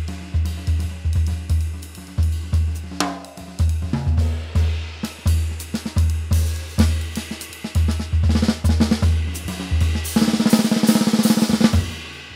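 Gretsch Catalina Club mahogany drum kit in a very high bop tuning, played with sticks: frequent bass drum strokes under snare, tom and cymbal hits. A fast roll starts about ten seconds in.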